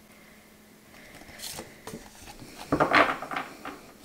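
Tarot cards sliding and rubbing against each other as a card is moved by hand off the top of the deck, a soft rustle followed by a louder swish about three seconds in.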